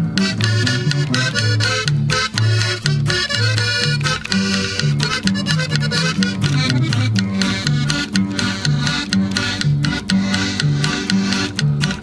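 Instrumental break of a norteño corrido: accordion playing the melody over a bass line that alternates between notes on a steady beat.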